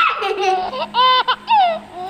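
A young child laughing and squealing in several high-pitched bursts, some sliding down in pitch.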